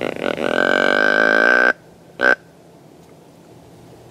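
Whitetail deer grunt call blown close by: one long buzzy grunt of about a second and a half that cuts off sharply, then a short grunt half a second later.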